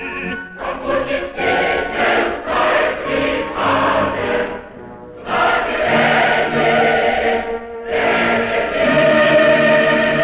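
A choir singing a song in long, held phrases, with short breaks between phrases about five seconds and eight seconds in.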